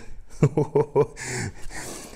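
A man chuckling in a few short bursts, then a breathy hiss.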